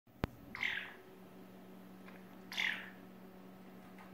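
African grey parrot giving two short calls, about two seconds apart, over a faint steady hum.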